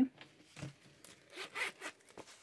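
Zipper of a black zip-around wallet being pulled open in a few short rasps, the loudest about three-quarters of the way through.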